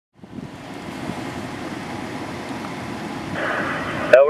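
Steady low rush of wind on the microphone, building slightly. Near the end a two-way radio's static hiss opens just before a transmission.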